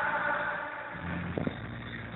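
Muffled live concert sound through a handheld camera's microphone: a low steady drone with a brief knock about one and a half seconds in.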